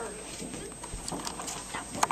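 Children shuffling and moving about a room, with faint scattered taps and rustles and soft, indistinct voices.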